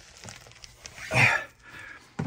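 Low rustling handling noise from a moving phone, with one short voice sound about a second in.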